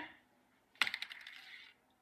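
Paper-clip spinner on a paper plate flicked into a spin: a sharp click a little under a second in, then a quick run of light metallic clicks that dies away over about a second.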